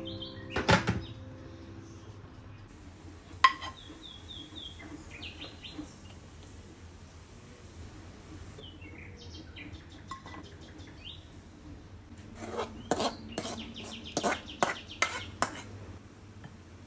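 Spoon and ceramic dishes clinking as food is served: light clinks and knocks with short high ringing, one sharper knock a few seconds in and a quick run of clinks near the end, over a low steady hum.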